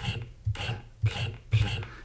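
Praat playing back the selected aspirated, voiceless [pl] portion of a recorded "play": several short breathy bursts, a little like spitting, the sound of a devoiced l after an aspirated p.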